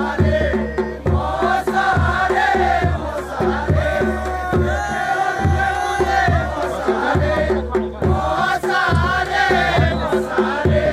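Himachali folk dance (nati) music: a wavering sung melody over a steady, regular drum beat and a low drone.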